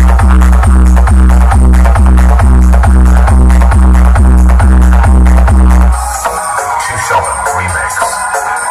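Electronic DJ dance remix played very loud through a truck-mounted stack of bass and mid speaker boxes, with a heavy bass beat about twice a second. About six seconds in, the bass beat drops out and lighter music carries on.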